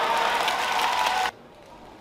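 Spectators applauding and cheering after a point in a badminton match, loud and even, cutting off suddenly just over a second in; low hall background follows.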